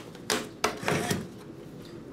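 Electric office stapler driving staples into paperwork: two sharp clacks about a third of a second apart, then a short, rougher burst about a second in.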